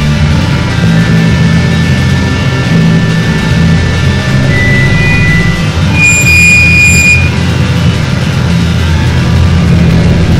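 Loud noise music: a dense, steady low drone with thin high tones drifting over it. About six seconds in, a bright electronic beep sounds for just over a second.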